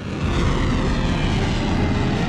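Rocket motor of an Arrow 3 interceptor missile climbing after launch: a steady, dense rushing rumble, heaviest in the low end.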